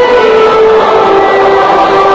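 A slow hymn sung by a large standing audience, with orchestral accompaniment. Its long held notes step down in pitch.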